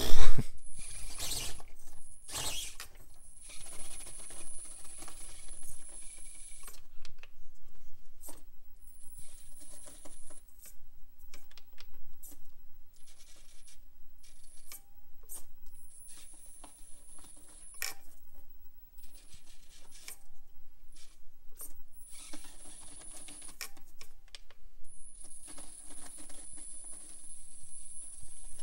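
Axial AX24 micro RC crawler climbing rock. Its drivetrain gives a thin high-pitched whine that starts and stops in stretches of a second or more as the throttle is worked. Scattered small clicks and knocks come from the tyres and chassis on the rock face, with one loud knock right at the start.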